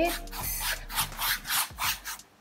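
A size 15 flat paintbrush scrubbed back and forth over a canvas to wet it before painting: a quick series of scratchy brush strokes, about four a second.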